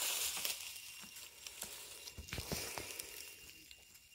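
Rustling and light crackling of dry straw and leafy plants disturbed by someone walking through them, loudest at first and fading, with scattered small clicks.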